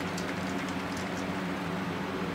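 Steady low hum of a running box fan, with faint light clicks from small plastic bottles being handled during the first second or so.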